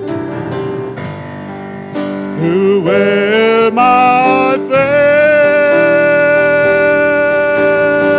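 A man singing a gospel song into a microphone over instrumental accompaniment. His voice climbs in short notes, then holds one long note through the second half.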